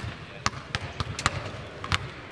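Basketballs bouncing on a hardwood court in a large, nearly empty arena: about six sharp, unevenly spaced thuds in two seconds, from several balls being dribbled and shot at once.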